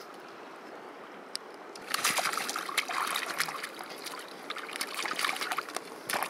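Water splashing and sloshing in the shallows, in two irregular spells starting about two seconds in, over a quiet steady background.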